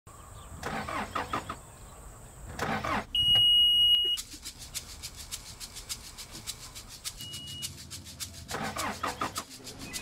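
Diesel engine of a Caterpillar 420E backhoe loader starting and running in short rough bursts, with a loud steady high beep lasting about a second after the second burst and a shorter one later. A fast, even ticking runs through the second half.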